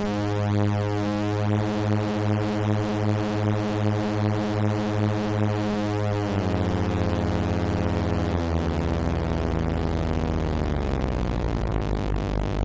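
Madwewe Mini Drone's six analog oscillators droning: a steady low chord whose bottom tone pulses about twice a second as paired oscillators beat against each other. About six seconds in the pitches slide as a knob is turned, and the drone thickens into a denser, rougher buzz.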